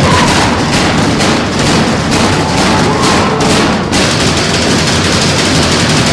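Recording from inside a prison solitary confinement unit: a loud, continuous din of rapid banging and clatter.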